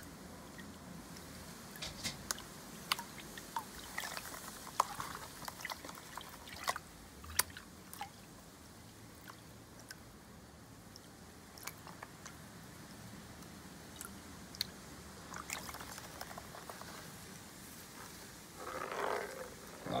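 Concentrates being panned in a plastic gold pan: quiet swishing and sloshing of water with scattered sharp clicks of gravel and sand against the plastic.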